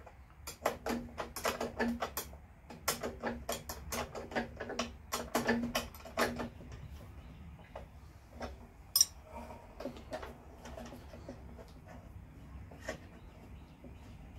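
A ratcheting wrench clicking in quick runs as the handle bolts of a push mower are tightened, stopping about six seconds in. Then a few scattered light metal clicks follow, with one sharp click, the loudest sound, about nine seconds in.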